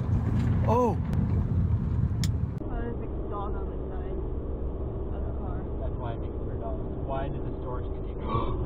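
Road and engine noise heard from inside a moving car, with people's voices over it. About two and a half seconds in it cuts to a quieter, steadier cabin drone with a faint hum and faint talk.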